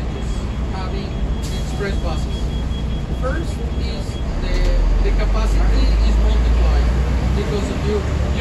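Cabin of a moving Transmilenio bus: a steady low engine and road rumble that grows louder about halfway through, with faint voices in the background.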